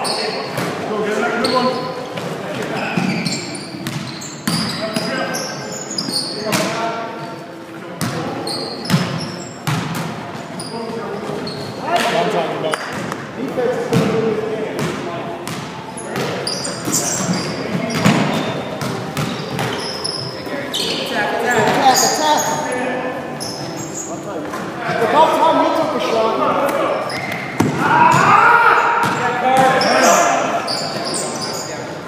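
Basketball game on a hardwood gym floor: a basketball bouncing as it is dribbled, with many short sharp thuds, and players' voices calling out, loudest near the end.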